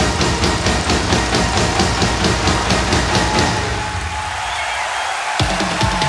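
Live band music with drum kit and percussion, cymbals keeping a steady fast pulse. About four seconds in the bass and drums drop away briefly, then the full band crashes back in near the end.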